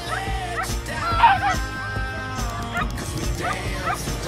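A dog barks sharply about a second in, over a pop song with a steady beat.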